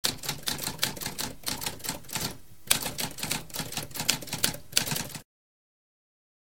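Typewriter keys striking in a quick, uneven run of clacks, with a brief pause a little past two seconds, stopping abruptly at about five seconds.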